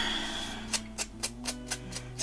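Soft background music with held notes, over a run of light taps, about four a second in the second half, from a foam ink blending tool being dabbed on a distress ink pad to load it.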